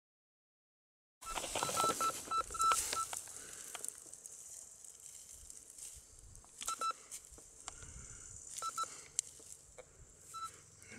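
Metal detector giving short, high beeps as a handful of soil is passed over its search coil, signalling a metal target in the soil. The sound starts about a second in with a quick run of about six beeps, then comes back as pairs of beeps twice more, with rustling of soil and grass in between.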